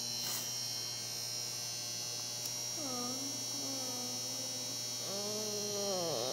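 Steady electrical mains hum with a high whine over it throughout. From about three seconds in, a person's voice makes drawn-out wordless sounds that glide in pitch, then holds a steadier, lower hum near the end.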